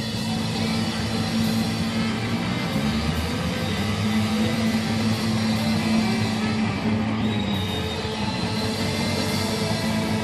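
Live rock band playing an instrumental passage: electric guitar and drum kit with a saxophone, no vocals.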